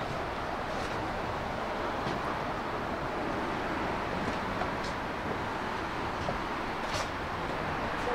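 Steady ambient noise of a large hall, with a few faint clicks and taps scattered through.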